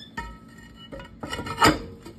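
Rusty steel brake drum on a rear axle hub handled by hand: a metal clank that rings on briefly, then the drum spun so it scrapes and rasps against the brake parts, loudest near the end.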